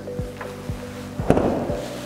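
Background music with a steady low beat, about two beats a second, and a held note through the first second.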